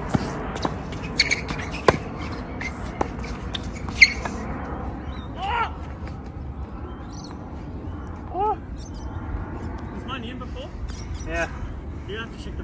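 Tennis ball struck by racquets and bouncing on an outdoor hard court during a rally: a string of sharp pops over the first four seconds, the loudest about four seconds in. Later come a few short rising-and-falling calls.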